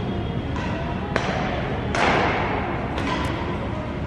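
Badminton rackets hitting a shuttlecock in a rally: sharp hits about a second in and about three seconds in, with a louder, longer burst of noise about two seconds in, all echoing in a large hall.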